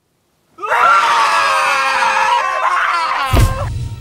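Several voices screaming at once, starting about half a second in and lasting about three seconds, cut off by a sudden heavy thud, with a low rumble after it.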